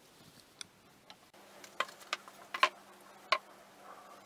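Steel hammer head being handled and set down on a wooden board: about five sharp, irregular clicks and knocks of metal on wood, clustered in the second half.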